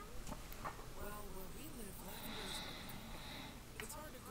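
A quiet, wavering, rattling hum from a voice performer: the changeling's chest-rattle purr, the sound it makes at a smell it loves.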